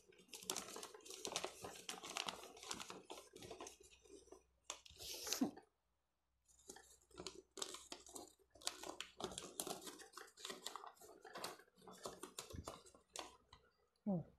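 Gift-wrapping paper being torn open and crinkled by hand, in irregular crackling rustles that cut out completely for about a second near the middle.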